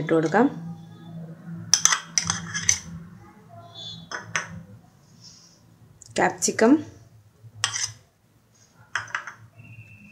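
Short knocks and clinks of kitchen bowls and a utensil as chopped vegetables are tipped from small bowls into a plastic mixing bowl, a handful of sharp taps spread unevenly through.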